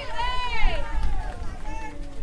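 High-pitched voices calling out and cheering: one long call that rises and falls in the first second, then shorter calls, over a low rumble of wind on the microphone.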